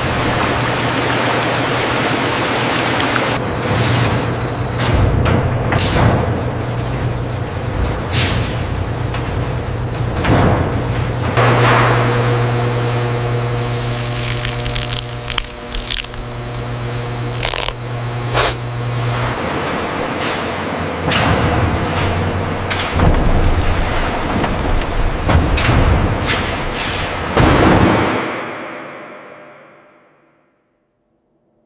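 Winery processing machinery with wine gushing into stainless-steel vats: a low steady hum that stops about two-thirds of the way through, a rush of liquid, and repeated sharp knocks and cracks. Everything fades out over the last two seconds.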